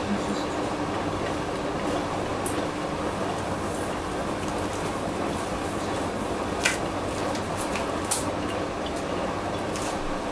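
Hotpoint Ultima WT960G washing machine turning its drum and tumbling the wash, a steady hum and swish. A few sharp clicks cut through, the loudest about two-thirds of the way in.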